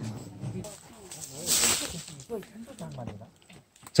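Faint chatter of several people some way off, with a short hiss about one and a half seconds in.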